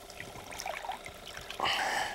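Water splashing and sloshing at a boat's side as a hooked tarpon is held alongside, with a louder splash near the end.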